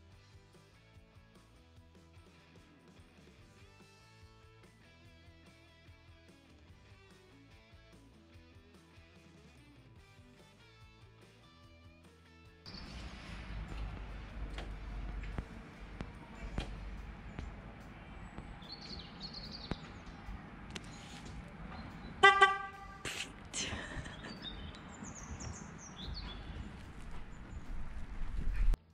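Faint background music, then outdoor noise with a low rumble. About 22 s in, a Land Rover Defender's horn gives one short toot: the newly fitted indicator/horn/high-beam switch unit being tested.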